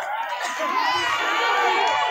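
A crowd of spectators cheering and shouting, many voices overlapping, swelling slightly about half a second in.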